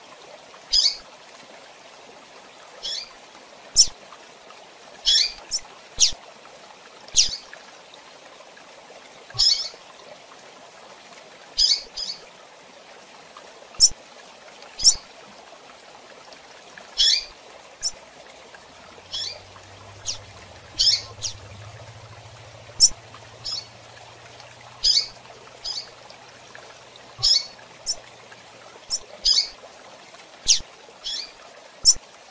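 Female double-collared seedeater (coleiro) giving short, sharp high chirps, spaced irregularly about one every second or two, over a steady hiss.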